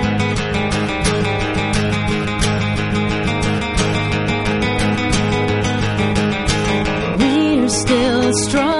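Acoustic guitar strumming chords over an acoustic bass guitar, an unplugged rock intro with a steady rhythm. A woman's singing voice comes in near the end.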